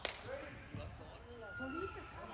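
Faint, distant voices of players and onlookers in an indoor soccer arena, with a single sharp knock at the very start.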